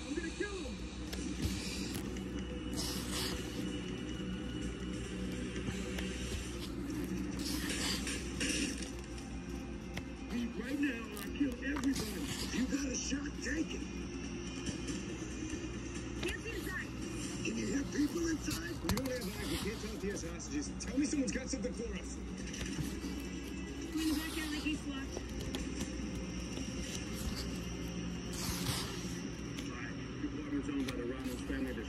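Pages of a thick hardcover comic book being turned, with a paper rustle every few seconds, about six times. Muffled voices and music play steadily in the background.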